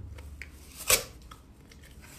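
Teeth biting into a piece of cardboard, one sharp tearing crunch about a second in, with faint crackles of chewing around it.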